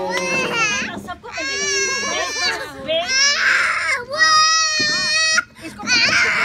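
A young child crying: about four long, high-pitched wails of roughly a second each, with other children's voices underneath.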